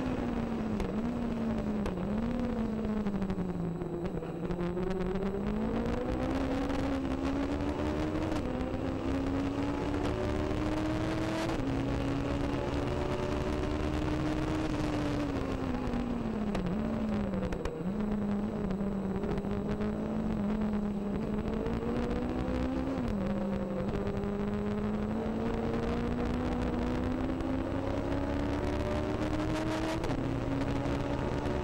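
Legend race car's Yamaha motorcycle engine, heard from on board at racing speed. The engine note drops as the driver eases off about four seconds in and again around seventeen seconds in, climbs under acceleration between, and steps down suddenly a little after eleven seconds and again about twenty-three seconds in, like upshifts.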